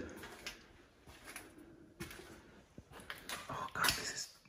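Faint footsteps and scuffs on a debris-strewn floor with a few light knocks, and one short louder noise near the end.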